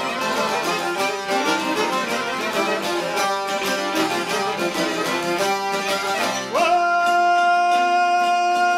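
Albanian folk ensemble of plucked long-necked lutes (sharki and çifteli) and violin playing a quick, busy tune. About six and a half seconds in, a man's voice enters, sliding up into one long held high note over the instruments.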